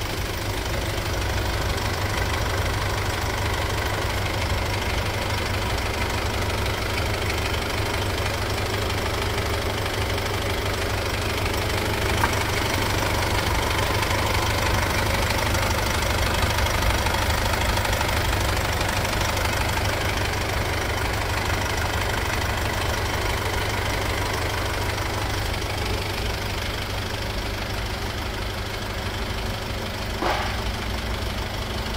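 SsangYong Korando's engine idling steadily, heard from beneath the car, with a single small click about twelve seconds in.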